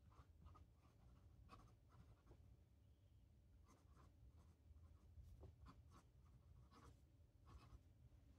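Faint scratching of a broad-nib fountain pen on paper as a line of handwriting is written, in many short, irregular strokes.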